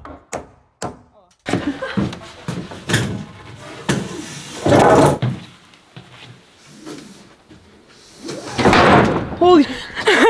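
Wooden floorboards being knocked into place: a quick run of sharp wooden knocks, then two heavier thumps, the second near the end as someone jumps on a board to seat it.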